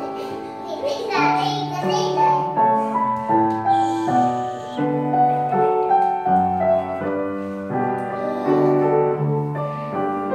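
Upright piano being played: a melody over low bass notes, each note held and left ringing.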